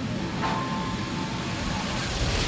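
Steady rumbling noise inside an airliner cabin during an emergency descent, with a short high tone about half a second in.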